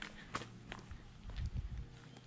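Soft footsteps on a dirt footpath.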